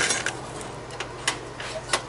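Light metallic clicks and clinks from hands handling metal parts in a car's engine bay, a few sharp ticks spread through the second half, after a short hiss at the start.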